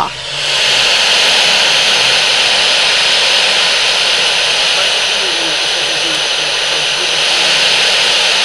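Loud, steady hiss played from a sound installation's speaker after one of its push buttons is pressed, swelling in during the first half second and then holding level.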